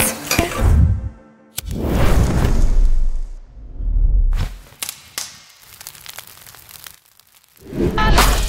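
A cloth tablecloth being shaken out and spread over a table: two bursts of flapping and whooshing cloth, the first about two seconds in and a shorter one just past halfway.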